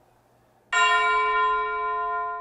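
A single bell chime, struck once about two-thirds of a second in and left ringing with a slow fade, its several steady overtones sounding together.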